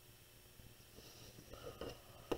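Near silence: room tone, with a few faint, soft sounds in the last half second.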